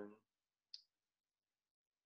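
Near silence, with the end of a spoken word at the start and one brief faint click about three quarters of a second in.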